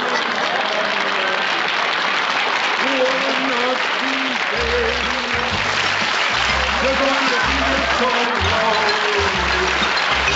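Studio audience applauding, with a band tune coming in under the applause about three seconds in and a bass line joining about halfway.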